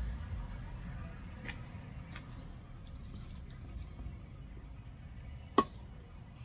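Steady low background rumble with a few faint ticks, and one short, sharp knock about five and a half seconds in, from handling while planting.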